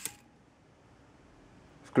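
Cheyenne Thunder rotary tattoo machine's motor cutting off with a click right at the start as its power is switched off, leaving near silence. A click comes just before the end.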